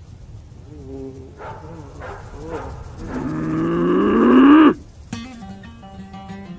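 A long, moo-like cry that rises in pitch and grows louder, then cuts off suddenly, after a few short grunts. Plucked guitar music starts just after it.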